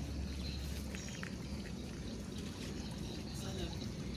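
Steady trickle of water running in a concrete drainage ditch.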